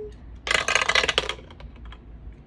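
A polyhedral die rolling and clattering in a dice tray: a quick run of clicks about half a second in, tailing off into a few fainter ticks as it comes to rest.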